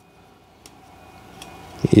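Quiet handling of blank Elgin DVD-R discs in the hands as they are turned over for inspection, with a couple of faint light clicks.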